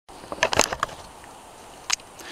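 A quick run of sharp clicks and knocks about half a second in, and one more near the end, over a steady low hiss.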